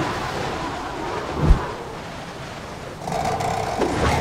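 Cartoon storm ambience: wind noise and low rumbling, with a single heavy thud about a second and a half in and the wind growing louder near the end.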